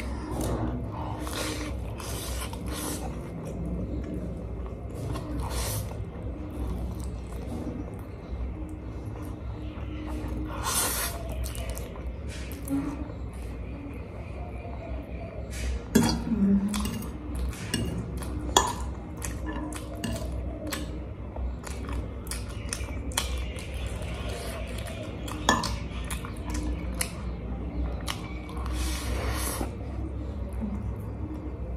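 Close-up eating sounds: a metal fork clicking and scraping against a plate as spicy instant noodles are forked up, slurped and chewed. A few sharper clinks stand out in the second half.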